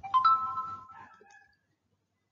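A chime sound effect marks the logo's appearance on the slide: a bright ring of several tones at once, struck just after the start and fading away over about a second and a half.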